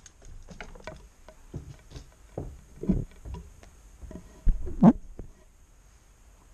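Close handling noise: irregular small clicks, taps and knocks of something being touched and moved right by the microphone, as the camera is settled on the table. The loudest knocks come about four and a half to five seconds in, then only a quiet hiss is left.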